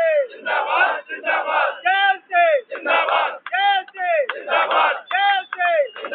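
Protest slogans shouted in a loud, rhythmic chant: a short phrase repeated about every second and a half, each ending on a falling shout.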